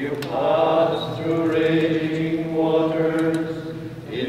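Men singing a slow chant with long held notes.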